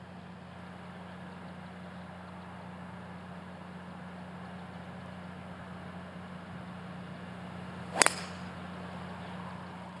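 A golf club striking the ball off the tee: one sharp crack about eight seconds in, over a steady low hum.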